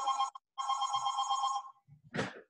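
A telephone ringing: one ring of about a second, a steady electronic tone of several pitches together, heard over a video call.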